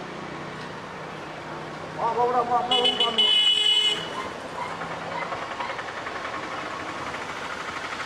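A vehicle horn sounds once, held for about a second, about three seconds in, over steady street traffic noise. A voice speaks briefly just before it.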